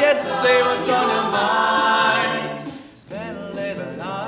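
Mixed-voice a cappella group singing a held chord with no recognisable lyrics, which fades out about three seconds in before the voices come back in with sliding notes.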